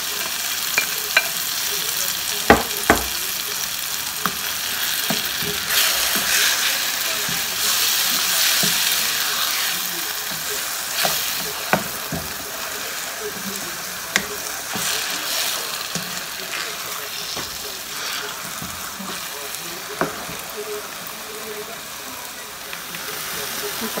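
Mashed roasted eggplant sizzling in a wok of tomato-onion masala as it is stirred with a spatula, with a steady frying hiss. Scattered sharp knocks of the spatula against the wok, two of them close together about two and a half seconds in.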